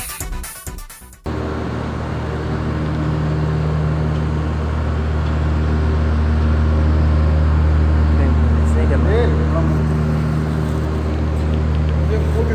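Electronic music cuts off abruptly about a second in, giving way to a steady low machine hum made of several held low tones, with faint voices in the background.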